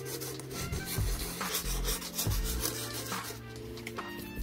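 Fine wet sandpaper rubbed by hand over the leather upper of a sneaker in quick scratchy strokes, about three a second, scuffing the smooth leather toward a suede-like nap.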